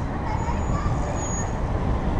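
Steady low rumble of wind on the microphone of a bicycle-mounted camera while riding, mixed with road traffic passing on the adjacent road.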